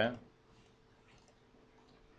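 Faint computer mouse clicks over quiet room tone with a faint steady hum.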